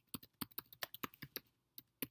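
Typing on a computer keyboard: a quick, irregular run of key clicks with a brief pause near the end.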